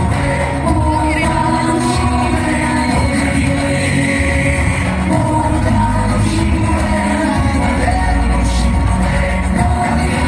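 Recorded music with a singing voice and strong bass, played loud over a hall's sound system.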